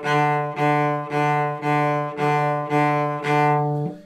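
Cello bowed back and forth on a single sustained low note, about two bow strokes a second, stopping near the end. Each stroke is started actively and then left to coast on its momentum, so the tone swells at each bow change and decays slightly toward the end of the stroke.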